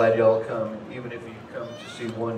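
A man's voice over the stage PA, loudest in the first half-second and trailing off.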